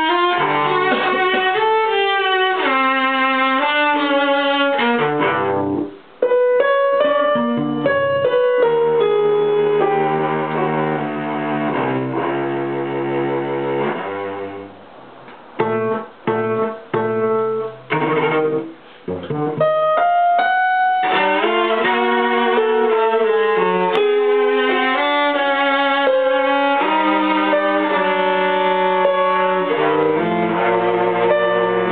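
Ensemble of bowed strings with piano playing a passage of the piece. The music breaks off briefly about six seconds in. A run of short, separate chords comes a little past halfway, and then continuous playing resumes.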